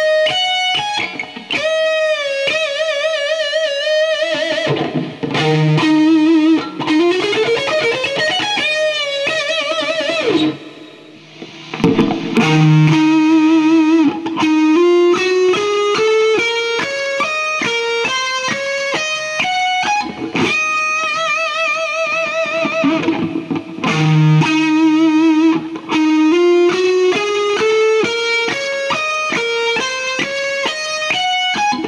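Electric guitar playing a solo line of single notes. Early on, held notes with wide vibrato and an upward slide; after a brief pause just before halfway, fast runs of notes climbing and falling in steps.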